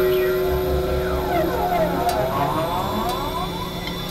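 Experimental electronic drone music: a steady held synthesizer tone under many overlapping tones that sweep up and down in pitch, with a brief low rumble about half a second in.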